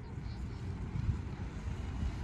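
Wind buffeting the microphone: a low, irregular rumble, with faint voices in the background.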